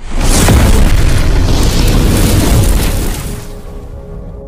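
A cinematic explosion boom sound effect for a logo intro: it hits suddenly, a loud rush with a deep rumble held for about three seconds, then fades over the last second.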